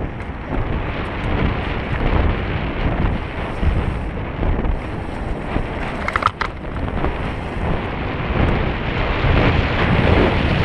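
Wind rushing over the microphone of a mountain bike during a downhill race run, with a continuous rough rumble from the trail. A brief high squeak comes about six seconds in.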